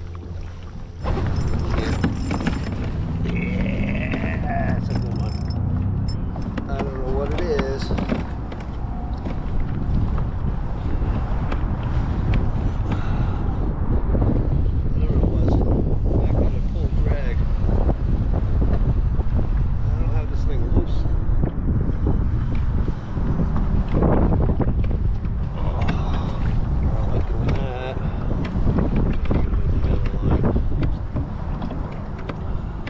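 Steady wind rushing and buffeting over an open-air microphone, with water lapping against the kayak hull, starting louder about a second in.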